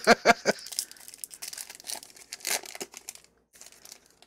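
Wrapper of a Topps baseball card pack crinkling and tearing as it is ripped open by hand, with a louder rip about two and a half seconds in. It stops about three seconds in.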